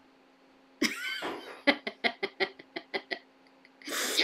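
A person's short run of laughter: a breath-like start, then about six quick chuckling pulses a second that fade out after a couple of seconds.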